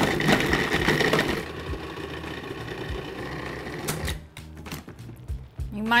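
Food processor blade chopping frozen banana chunks, loud for the first second and a half and then settling into a quieter, steady whir as the frozen fruit breaks down toward a creamy texture.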